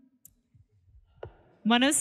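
A mostly quiet pause broken by a faint click, then a sharper click about a second and a quarter in, before a voice starts speaking near the end.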